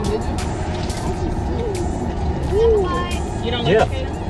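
Steady low rumble of an idling car heard from inside its cabin, with aluminium foil crinkling in short scattered bursts as a foil-wrapped turkey leg is unwrapped. Brief snatches of voices come in near the end.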